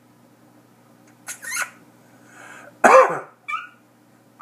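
Prairie dog giving its jump-yip call: a loud, high call falling in pitch about three seconds in, followed at once by a short yip, with softer, shorter sounds a second or so before.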